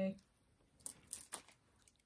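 A few short, faint rustles and clicks of objects being handled on a tabletop, three or four in the middle stretch.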